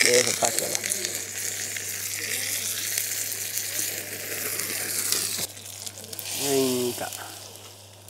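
Curry leaves frying in hot oil in a small iron tempering ladle, a sizzling hiss that dies away after about five seconds.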